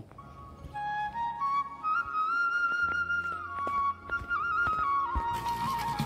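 Background music: a solo flute melody of long held notes stepping up and down in pitch.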